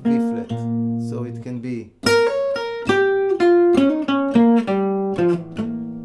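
Archtop acoustic guitar played with a pick. A held note rings for about two seconds, then a quick single-note lick is picked note by note and ends on a long note that fades away.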